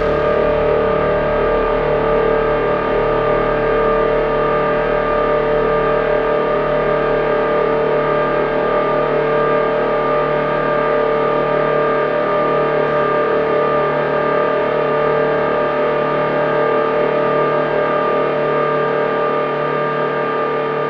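Behringer DeepMind 6 analog polysynth playing a steady ambient drone of several held tones with a fine, fluttering texture, all with its own onboard effects; the notes are shaped by LFO-triggered looping envelopes and heavy cross-modulation rather than a sequencer or arpeggiator. It eases off slightly at the very end.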